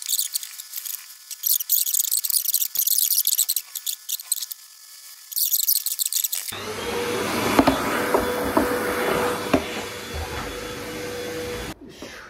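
Two blocks of styrofoam rubbed hard against each other to shave and round them, a dense crackling squeak. About six and a half seconds in it gives way abruptly to a steady rushing noise with a steady hum, which cuts off suddenly near the end.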